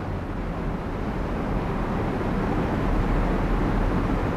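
Steady rushing background noise with a low hum underneath, growing slightly louder toward the end.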